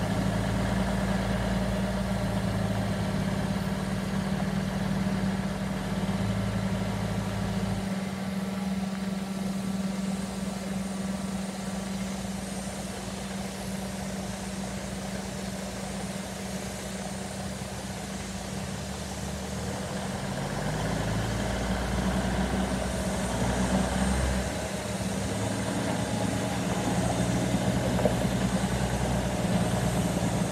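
Old flatbed semi truck's diesel engine running at low speed as the truck rolls slowly across a gravel yard, its low note steady and getting louder in the last third as it turns past close by.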